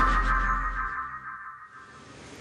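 Short electronic music sting marking the cut to a filmed report: sustained tones over a deep bass note, the bass dropping out about a second in and the rest fading away.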